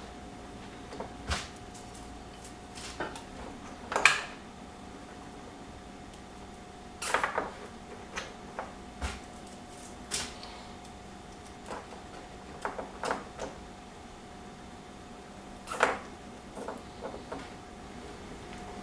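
Nylon cable ties being zipped tight around a bundle of wires, heard as short rasps and clicks every few seconds, the loudest about four seconds in, along with the handling of wires and plastic connectors. A faint steady hum runs underneath.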